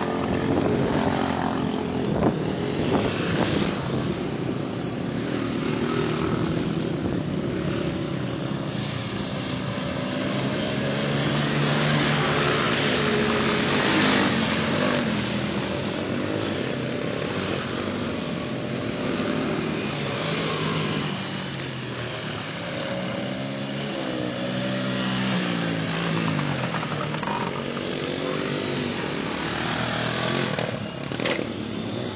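Dirt bike engines running and revving as riders go by at low speed, the pitch rising and falling with the throttle.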